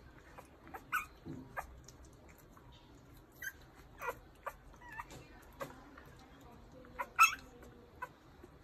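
A newborn puppy whimpering and squeaking in short, high cries, about nine of them, the loudest near the end.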